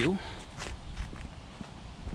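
Footsteps on stone paving, a step about every half second.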